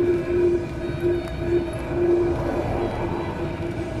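Diesel FF air heater (2 kW, 12 V) running with its exhaust pipe open and no muffler fitted: a loud, steady hum from the burner and exhaust that wavers slightly in strength. It is being shut down at its controller.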